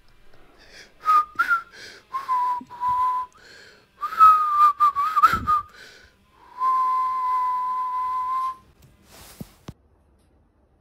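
A person whistling: a few short notes, then a wavering phrase, then one long steady note held for about two seconds.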